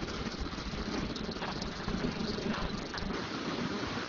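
Steady room noise with faint rustling and a few soft clicks.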